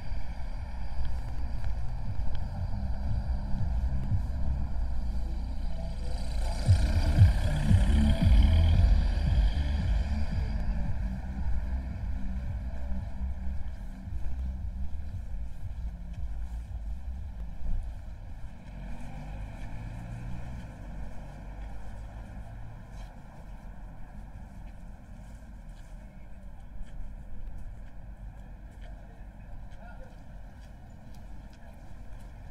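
Town street ambience with a low steady rumble of traffic, and a car driving past close by, building and fading over about four seconds from roughly six seconds in. The street grows quieter through the second half.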